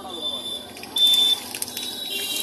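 Street-stall wok cooking: hot oil sizzling in an iron wok with a metal spatula clicking against the pan. A steady high whistle-like tone runs through it and is loudest for a moment about a second in.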